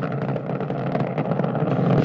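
Steady, loud roar of the Space Shuttle's solid rocket boosters in powered ascent, heard from the booster as the shuttle climbs toward the speed of sound.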